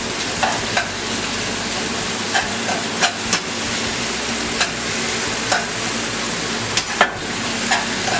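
Chicken, egg and wide rice noodles frying in a hot pan on high heat with a steady sizzle. Short sharp clacks of a utensil against the pan come about once a second as it is stirred.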